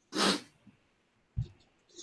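A person's short breathy burst, about half a second long, followed about a second later by a brief low thump.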